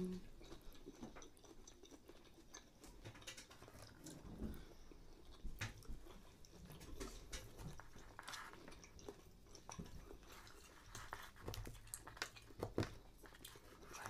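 Faint chewing and biting of food close to the microphone, with scattered small clicks and crunches.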